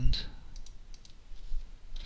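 A few soft computer mouse clicks.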